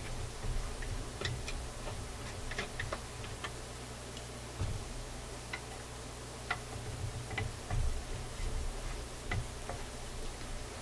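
Hand screwdriver turning out the screws of a receiver chassis's sheet-metal bottom panel: small, irregular metallic clicks and ticks.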